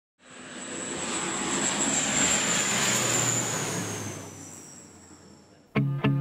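Aircraft engine noise with a high whine that swells over about two seconds and then fades away, as of a plane passing.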